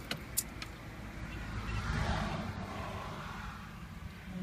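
A motor vehicle going past, its noise swelling to a peak about two seconds in and then fading over a steady low traffic rumble, with a few sharp clicks in the first second.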